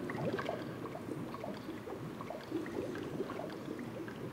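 Bubbling, gurgling water sound effect played by the Fishbowl aquarium demo: an irregular, steady trickle of small bubbly pops.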